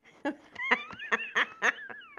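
A woman laughing in a run of short bursts, amused that the card she is shredding has jammed in the paper shredder.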